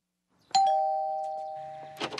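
Two-tone doorbell chime: a higher ding about half a second in, then a lower dong right after it, both ringing on and fading slowly.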